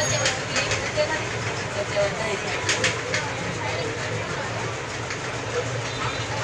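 Street ambience with indistinct voices, a steady low hum and scattered short clicks.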